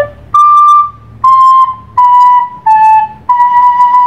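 Soprano recorder playing five tongued notes in a slow, clear line: high re, do, si, la, then back up to si. The last note is held longest, about a second.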